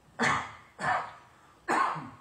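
A man coughing three times into his hand, close to the microphone, in three sharp bursts about half a second to a second apart.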